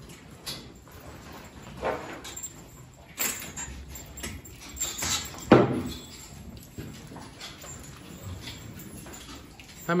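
Young beef cattle in a barn: a series of scattered short animal and stall sounds, the loudest a sharp one about five and a half seconds in.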